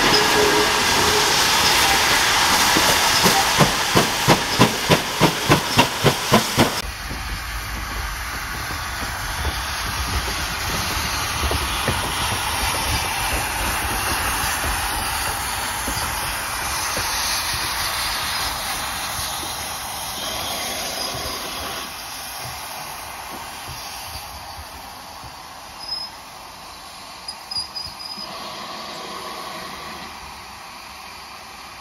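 GWR 5205-class 2-8-0 tank engine 'Goliath' letting off hissing steam, then a run of sharp, even exhaust beats, about three a second, as it works away. About seven seconds in the sound drops suddenly to a softer steam hiss and running noise that fades as the engine draws off.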